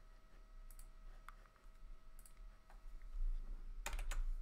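Computer mouse clicking a few times, with a louder double click near the end, over a faint steady electrical hum.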